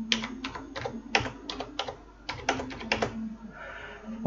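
Computer keyboard keys being typed in a quick, uneven run of about a dozen keystrokes, entering a date into a form field, with a short pause about two seconds in.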